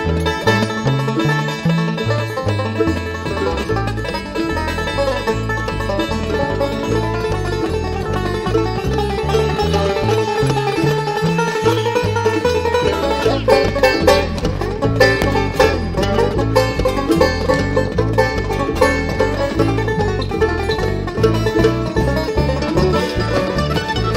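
Live bluegrass-style instrumental break: a banjo picking the lead over a strummed acoustic guitar, with bass notes stepping steadily underneath.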